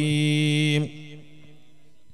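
A man's voice, amplified through a microphone, holds one long steady note at the end of a chanted Arabic phrase. It cuts off just under a second in, and a brief echo fades into a faint steady electrical hum.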